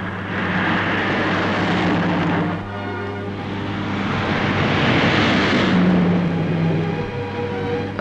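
Rally car engines and tyres on a wet track as cars drive past, the sound swelling and fading twice, over a steady low hum.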